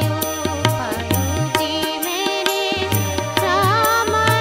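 A woman singing a song with keyboard and tabla accompaniment. The drum strokes keep a steady rhythm under a sustained low keyboard line.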